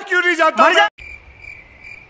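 A man's loud wailing cry that bends up and down in pitch and cuts off suddenly about a second in, followed by faint, steady, high cricket chirping.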